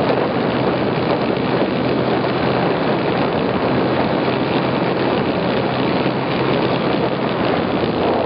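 Snowmobile engine running steadily, heard up close from the machine itself: a constant low hum under a steady rushing noise.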